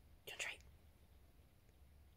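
A person's short whisper about a third of a second in, then near silence with a faint low hum.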